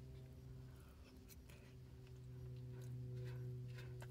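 Quiet chewing, with faint scattered clicks of a plastic fork, over a steady low hum.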